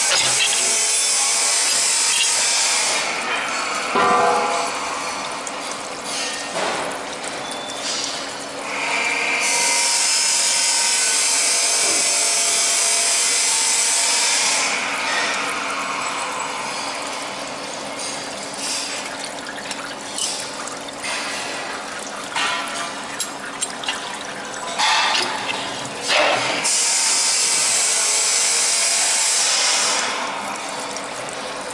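A full-automatic chain link fence machine winding steel wire through its spiral mold, the wire rasping through the mold as loud hiss-like noise in three stretches: at the start, in the middle and at the end. Between them come quieter stretches of scattered metallic clicks and knocks from the machine's parts, over a faint steady hum.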